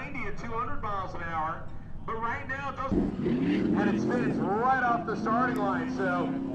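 People talking, and from about halfway through a low engine hum that rises in pitch and then holds steady.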